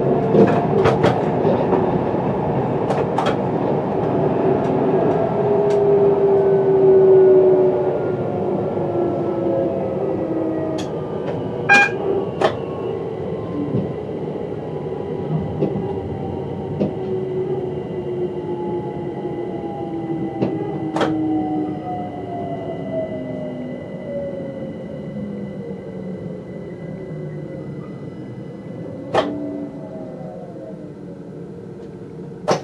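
Electric multiple unit heard from the cab, its motor whine falling slowly in pitch as the train slows into a station, over steady wheel and rail noise with a few sharp clicks.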